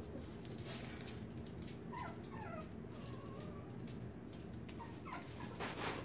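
Chihuahua puppy whimpering softly: a few short, falling whines about two seconds in and a couple more near the end, with scattered faint clicks.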